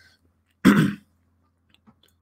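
A man clears his throat once, briefly, a little over half a second in, followed by a couple of faint clicks near the end.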